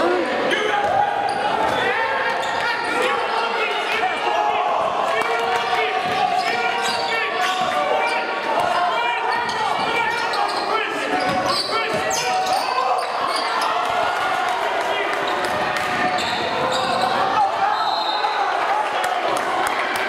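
Spectators talking over one another in a large gymnasium during a basketball game, with a basketball dribbling on the hardwood court now and then. The sound is echoing and steady throughout.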